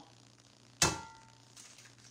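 A single sharp clang with a short metallic ring, kitchenware knocked against cookware on the counter, about a second in, over a faint steady hum.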